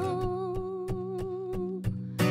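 Acoustic guitar strummed in a quick, even rhythm under a woman's long held vocal note, which breaks off near the end.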